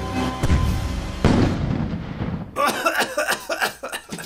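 An explosion about half a second in as the cardboard prop tank fires, with a second loud rush of noise a moment later. Short coughs follow near the end, over background music.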